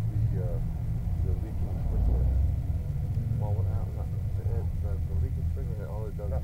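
A steady low rumble with a hum, like a motor running, under faint, indistinct talk.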